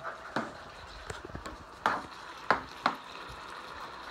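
Beef strips and onions sizzling in an electric skillet while a metal slotted spoon stirs them, clacking and scraping against the pan several times, loudest about two and two and a half seconds in.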